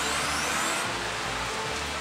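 Pachinko parlor din: a steady wash of machine noise and electronic jingles from the rows of pachinko and pachislot machines. A faint rising electronic whistle comes in the first second.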